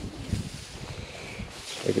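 Wheat stalks rustling and brushing against a person walking through a standing wheat crop, with wind on the microphone. A voice begins right at the end.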